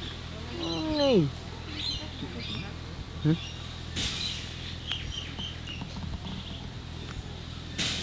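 Small birds chirping in the background, with a person's falling "aww"-like sound about a second in and a short "huh?" a little after three seconds. Two brief rustles, one near the middle and one near the end.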